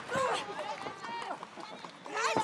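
Women shouting: wordless yells that bend up and down in pitch, loudest in the first half-second, then fading.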